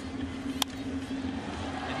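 A single sharp crack of a bat hitting a baseball about half a second in, as the batter rolls over the first pitch into a ground ball. Under it runs the steady murmur of the ballpark crowd.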